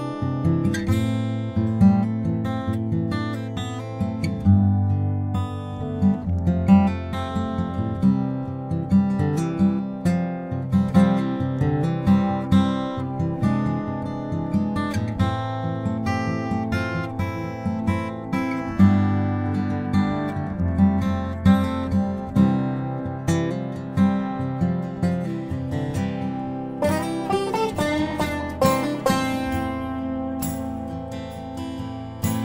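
Background music on acoustic guitar, plucked and strummed with an even rhythm of note attacks.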